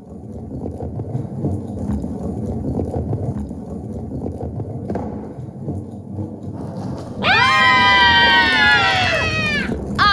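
A low, steady rumble for about seven seconds. Then a long, high-pitched scream of 'Ahhh!' that slides slowly down in pitch for about two and a half seconds.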